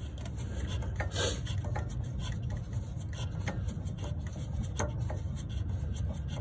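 A wrench and hands working the ignition coil's mounting bolts loose on a small engine: scattered short metal clicks and rubbing scrapes, over a steady low hum.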